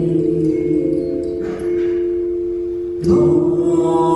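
Live vocal music: a woman singing long held notes over a steady drone, with a new phrase starting sharply about three seconds in.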